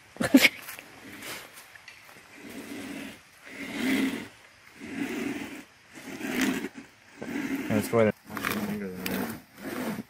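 Two-person homemade wooden-framed buck saw cutting into a log, its blade rasping through the wood in steady strokes about once a second, starting about three seconds in.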